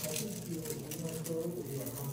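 A seasoning shaker being shaken over a tray, with a faint rattling, under low voices.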